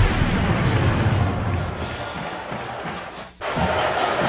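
Broadcast transition music fading down under the end of the announcer's line, then cutting out suddenly about three and a half seconds in. A steady crowd noise follows.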